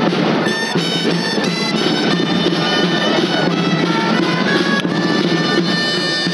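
Valencian dolçaina (shawm) and tabalet drum playing a loud, fast folk dance tune, the melody moving quickly from note to note over a steady drum beat.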